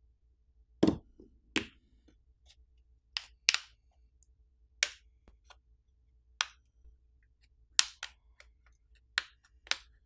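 Plastic catches of a smartphone's plastic back housing snapping free one by one as a plastic pry pick is worked along the edge of the frame: about ten sharp clicks at irregular intervals.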